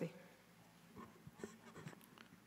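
Near silence: room tone with a few faint soft clicks and rustles.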